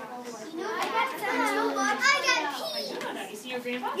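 Young children's voices, several talking and calling out over one another at once.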